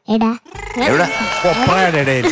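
A person speaking in a high voice: a short phrase, a brief pause, then continuous talk.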